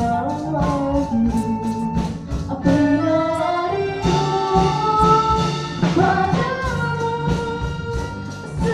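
A woman singing long held notes into a microphone with a live band: a drum kit keeps a steady beat under acoustic guitars.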